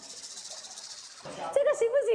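A high hissing sound effect with a fast flutter for about the first second, then a voice starts speaking.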